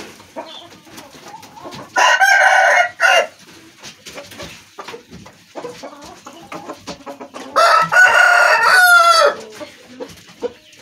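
Rooster crowing twice, once about two seconds in and again near the end; the second crow is longer and trails off in a falling note.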